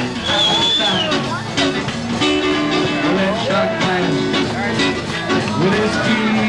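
Live band playing an upbeat rock and roll number on drums, bass and guitar, with people's voices over the music.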